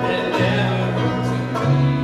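Live bluegrass-style worship music: a banjo and another plucked string instrument accompanying singing, in held notes that change every half second or so.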